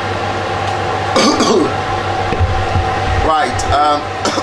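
Steady hum and hiss with a constant tone from a hob on very high heat and the saucepan of palm oil being bleached on it. Two short voice-like sounds come about a second in and near the end.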